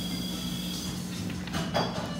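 Coffee-shop room noise: a steady low mechanical hum under a general background murmur, with one short clatter near the end.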